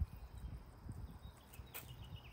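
Faint patter of water sprinkling from a plastic watering can's rose onto grass and concrete, over a low rumble.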